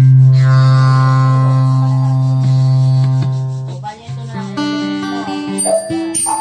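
Acoustic guitar: a low strum rings out, slowly fading, for about four seconds. Then a few higher notes are picked one after another.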